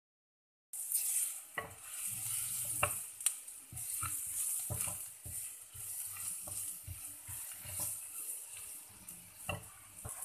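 A wooden spatula stirring a thick, simmering fish curry in an earthenware clay pot, the curry sizzling throughout. The spatula knocks against the pot now and then. The sound starts just under a second in.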